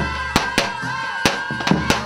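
Live folk wedding music: a large bass drum (tapan) struck in loud, uneven beats, about five in two seconds, under a sustained, wavering wind-instrument melody.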